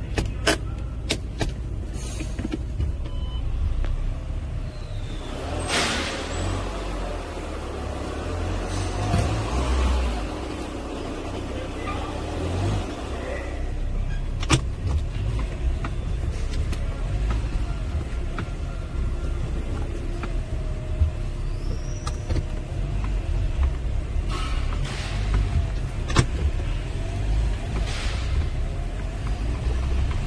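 Volkswagen Jetta TDI turbodiesel engine idling steadily, heard from inside the cabin, with a few sharp clicks and knocks near the start and once about midway.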